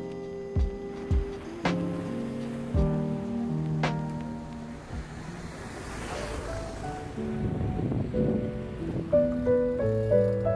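Background music: a gentle instrumental with steady sustained notes and several sharp percussive hits in the first half. Near the middle, a soft rush of noise swells up and fades.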